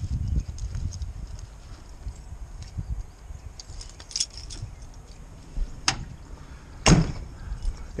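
Hands rummaging through a backpack for a set of keys, with keys jingling and small items clicking. Near the end come two sharp knocks, the louder one about seven seconds in.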